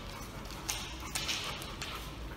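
Dogs' claws clicking and tapping on a hardwood floor as two puppies trot about, in a run of irregular clicks that is busiest in the second half.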